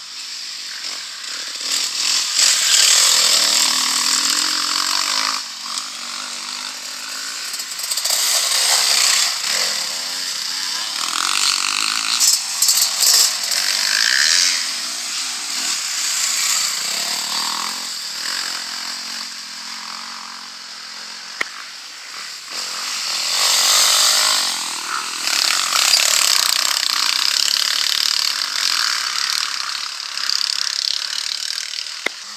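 Off-road dirt bike engines revving up and down as several bikes ride past one after another. Each pass swells and fades, with the loudest passes a few seconds in and again about three-quarters of the way through.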